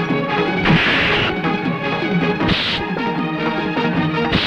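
Film fight-scene music running throughout, cut by two punch-and-hit sound effects: one just under a second in, lasting about half a second, and a shorter one about two and a half seconds in.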